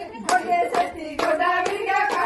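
A group of women singing together while clapping their hands in a steady rhythm, a little over two claps a second.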